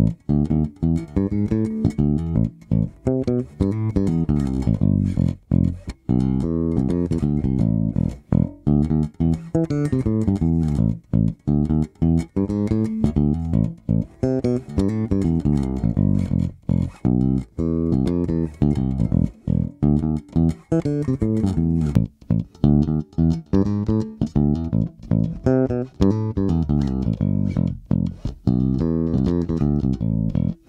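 Four-string StingRay-style electric bass playing a repeating fingerstyle test riff, at first through its stock humbucker and later through a Nordstrand Big Blademan pickup wired in parallel, with the onboard preamp's EQ centred. Clean, punchy notes with short breaks between phrases.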